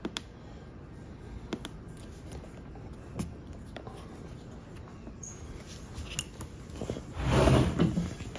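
Scattered light clicks and taps as the hinged rubber weatherproof caps on a plastic battery case's USB sockets are thumbed, with a louder rustling scrape of handling near the end.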